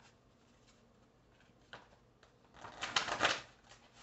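A deck of divination cards being shuffled by hand: a quiet stretch, then a quick run of papery flicks about two and a half seconds in, lasting about a second.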